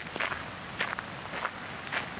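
Hiking shoes crunching on a fine gravel path at a steady walking pace, about four steps, one every 0.6 seconds.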